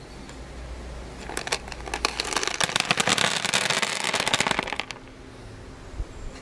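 A handful of dried beans spilling onto a wet plastic sheet: a dense clatter of many small hard hits that builds about a second in, is loudest through the middle and stops near the end.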